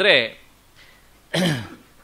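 A man's lecturing voice finishes a word, then after a pause of about a second he briefly clears his throat, a short sound falling in pitch.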